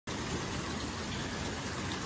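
Rain falling steadily, an even hiss with no separate drops standing out.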